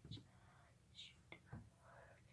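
Near silence, with faint whispering and a few soft clicks.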